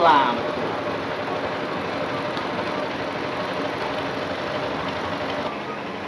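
A short vocal exclamation at the start, then a steady mechanical drone like an engine running, without change for several seconds.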